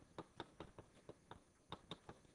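Chalk tapping and clicking against a blackboard while writing: a quiet run of short, sharp, irregular ticks, about four a second.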